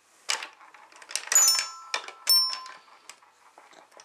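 Toy xylophone's metal bars struck unevenly by a baby's hand: scattered single notes that ring briefly, the loudest about a second and a half in and just after two seconds.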